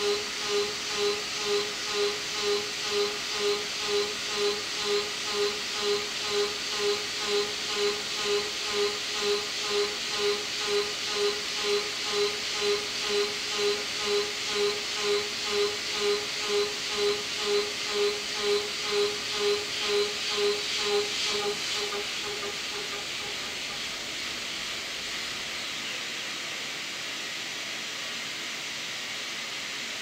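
Four-flute solid carbide end mill trochoidal-milling 1045 medium carbon steel at 6100 RPM on a CNC mill: a high cutting tone swells about twice a second as the tool sweeps into the material on each loop, over a steady hiss. The pulsing stops about 22 seconds in, leaving only the steady hiss.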